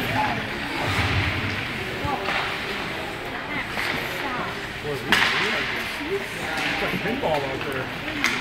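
Ice rink ambience during a youth hockey game: indistinct voices of spectators and players over the general noise of play, with one sharp knock about five seconds in.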